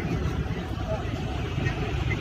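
Steady low rumble of roadside traffic, with faint voices in the background.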